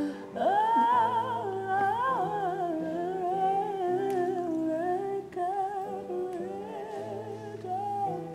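A young man singing a slow, wordless melody with a wavering pitch, over an electronic keyboard holding low chords that change every second or two.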